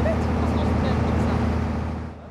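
Steady low drone of a small boat's outboard motor running, with faint voices over it; the drone drops away near the end.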